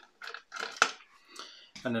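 Light clicks and taps of plastic model parts being handled and pried at by fingers, with a sharper click a little under a second in.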